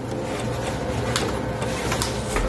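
A steady mechanical whirring hum with a thin steady tone in it, and a short sharp click a little past one second in.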